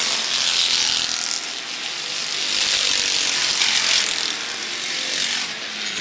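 A field of stock cars running hard around a short oval, their engines a loud, rasping blend that swells and fades as the pack goes by.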